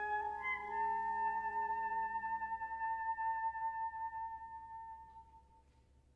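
Wind ensemble holding a sustained chord. The lower voices drop out about three seconds in, and a single high note is held on until it fades away near the end.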